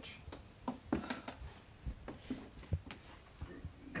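A handful of light, separate knocks and rustles, spread unevenly: the handling noise and steps of people moving about a small room with a handheld camera.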